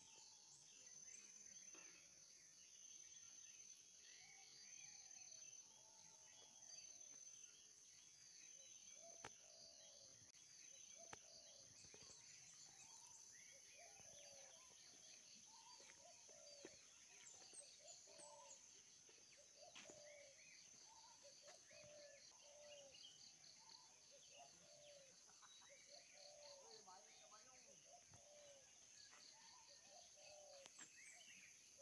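Faint outdoor ambience: a steady high insect buzz with a fast, regular chirping, and many short rising-and-falling calls scattered throughout.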